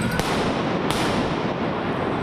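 Police stun grenades (flash-bangs) going off in the street: two sharp bangs about two-thirds of a second apart over a steady rush of loud noise.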